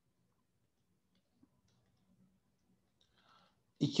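Near silence with a few faint clicks of a stylus inking handwriting on a tablet screen. Near the end a breath is heard, then a man starts speaking.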